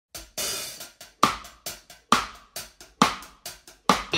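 Drums playing alone in the intro of an indie pop song: hi-hat strokes between snare hits that land about once a second, with a washy cymbal hit near the start.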